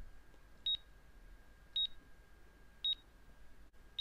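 Short, high key-press beeps from the Mitsubishi GOT HMI's on-screen numeric keypad, running in GT Simulator3, one beep per key as a password of repeated 2s is entered. Three beeps come about a second apart, and a fourth comes right at the end.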